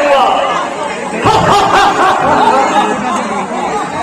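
Several voices talking over one another, with no single clear speaker.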